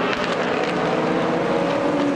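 Several LMP2 prototype race cars running hard through a corner, their V8 engines giving a steady, overlapping drone that shifts slightly in pitch as they pass.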